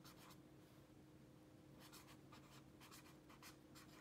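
Faint scratching of a pen writing a word on lined notebook paper, in two spells of quick strokes with a short pause between.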